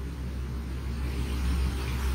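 Low, steady background rumble and hum with no speech, rising slightly in level toward the end.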